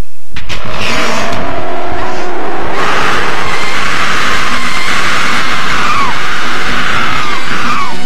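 Loud horror-film soundtrack: dense, noisy music and sound effects over a title sequence, with a wavering tone that slides downward near the end and then cuts off abruptly.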